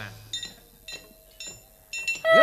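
Gamelan metallophone keys struck lightly three times, about half a second apart, each a soft ringing note.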